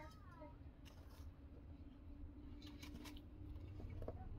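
Faint sounds of a small knife slicing a tomato by hand, with a few soft clicks and cuts, under a low steady hum. A short, high-pitched gliding cry sounds right at the start.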